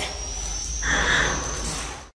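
Film soundtrack ambience: a steady low rumble and hiss with a thin, steady high whine, the hiss swelling briefly about a second in.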